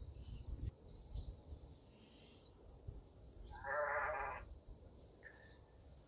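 A sheep bleats once, a single call about a second long a little past the middle, over faint low background noise.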